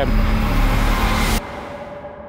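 Loud, steady rushing noise with a low hum underneath. It cuts off abruptly about one and a half seconds in, leaving a fading ringing tone: a trailer sound-design effect cut at a scene change.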